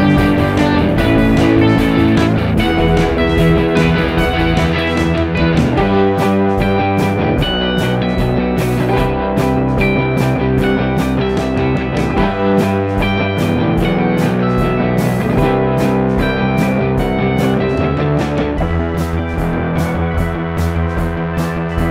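Rock music with electric guitar over a steady drum beat.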